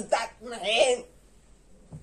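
A person's voice making short playful non-word sounds: two loud bursts in the first second, the second one longer and rising in pitch.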